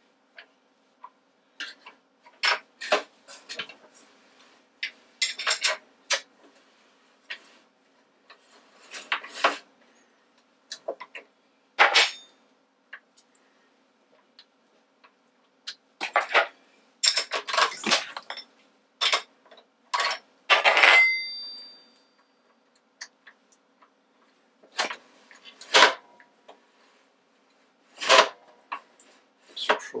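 Irregular metallic clicks and clinks of a spanner and the quill return-spring housing being worked against a drill press's metal head while the spring tension is set. One clink about two-thirds of the way through rings on briefly.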